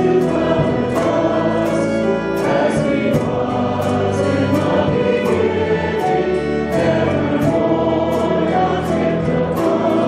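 A church congregation singing a hymn together, many voices holding long chords.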